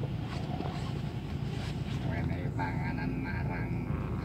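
Car engine idling, heard from inside the cabin as a steady low rumble, with faint voices from about two seconds in.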